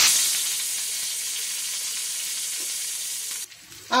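Curry leaves sizzling as they hit hot oil with mustard seeds, cumin and spices in a frying pan: a tempering (tadka). The sizzle is loudest as the leaves go in, settles to a steady hiss, and cuts off suddenly near the end.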